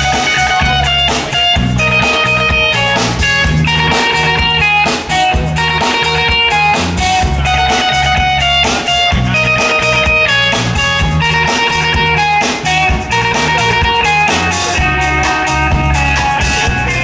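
Live band playing an instrumental passage: two electric guitars picking melodic lines over a drum kit.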